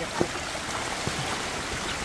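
Shallow muddy floodwater rushing steadily across a dirt path, with two brief splashes of bare feet wading through it, one just after the start and one about a second in.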